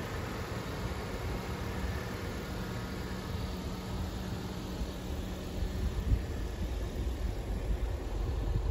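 Steady background noise with a faint low hum; a low rumble grows louder about two-thirds of the way in.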